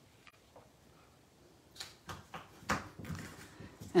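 Cardstock being handled: after a quiet stretch, a few short rustles and taps of paper from about halfway in, the loudest near the end, as a folded greeting card is pressed and lifted.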